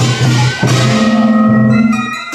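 Korean daechwita procession band playing: reedy taepyeongso shawm melody over regular drum beats with metallic cymbal and gong crashes. A long low horn note is held through the second half.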